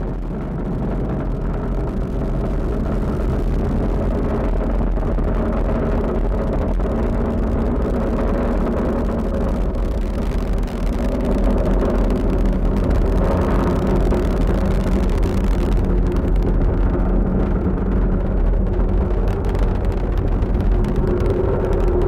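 Falcon 9 rocket's first stage, its nine Merlin engines firing during ascent: a loud, steady low rumble that grows a little louder about halfway through.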